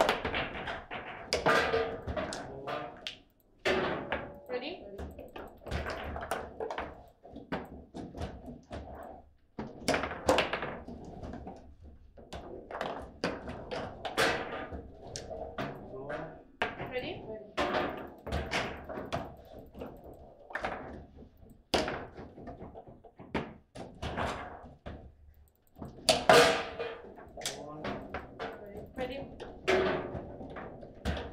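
Table football play: the ball cracking off the plastic players, rods knocking and clacking, and sharp shots banging around the table in irregular bursts. There are a few brief lulls when the ball is out of play.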